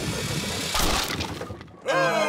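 Cartoon bowling ball rolling along a wooden floor, then a loud crash about three quarters of a second in as it strikes the pins, fading out over the next second.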